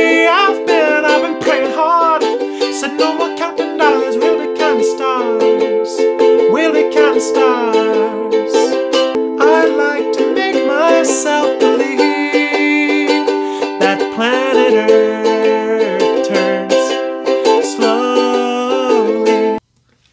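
A man singing while strumming a ukulele through the C, A minor, F and G chords. The music cuts off suddenly for a moment near the end.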